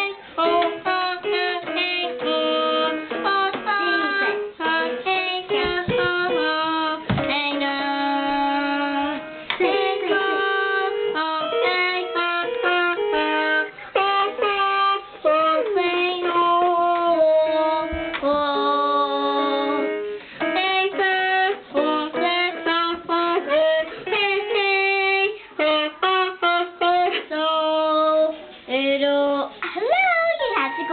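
A toy electronic keyboard playing a run of steady, stepwise notes, with a young girl singing along into a toy microphone.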